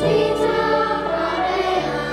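Children's choir singing with instrumental accompaniment, in held notes that change pitch step by step.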